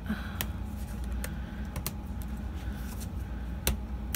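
Irregular sharp clicks and light handling noise as a snap-in plastic ruler is worked loose from a planner's metal spiral binding, fingers and plastic knocking against the rings. The loudest click comes near the end.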